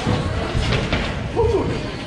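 A jumper taking off and landing a flip on a trampoline: dull thuds from the trampoline bed a little under a second in, over the rumble of a large hall.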